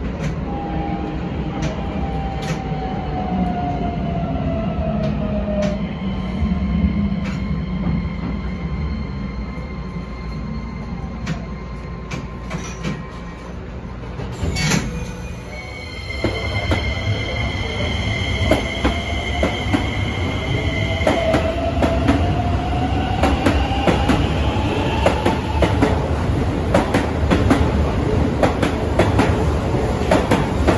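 Keisei 3100 series electric train. First comes its motor whine falling in pitch as it slows into the platform; then, after a cut, the train runs past with steady high tones, a motor whine that rises in pitch, and rapid wheel clicks over the rails.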